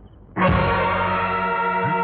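Dramatic background score: a sudden loud gong-like stroke about a third of a second in, then a sustained chord of many ringing tones.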